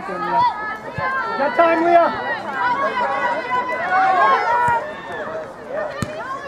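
Many voices shouting and calling over one another across a soccer field during play, high and overlapping, with no single clear speaker.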